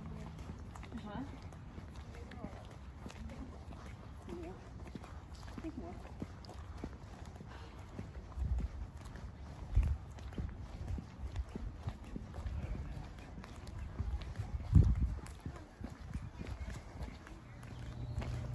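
Footsteps of people walking on pavement, a run of faint regular steps, over a low rumble. A few stronger low thumps come about halfway through, and the loudest comes near the end.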